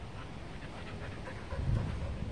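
A dog panting close by in quick, rhythmic breaths, followed near the end by a louder low thump.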